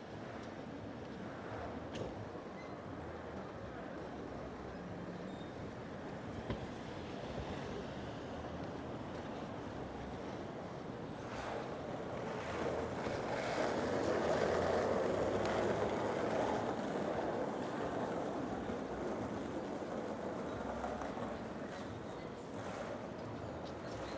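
Steady city street traffic noise at night. A vehicle passing swells and fades about halfway through.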